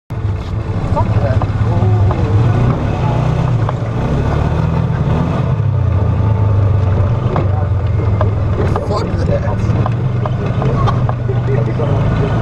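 Off-road vehicle engine running as it drives a rough dirt trail, its pitch rising and falling with the throttle, with scattered knocks from the ride.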